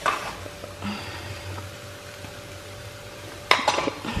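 Mango pieces frying quietly in a stainless steel kadai, with a sharp clink against the pan near the end as spice powder is added.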